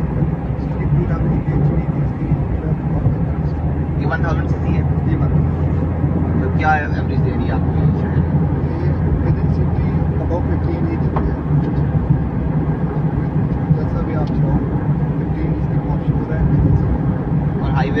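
Cabin noise inside a moving Toyota Vitz 1.0 hatchback: a steady drone of its small three-cylinder engine and the tyres on the road. A deeper, even engine hum holds for several seconds in the middle. A few brief voices are heard over it.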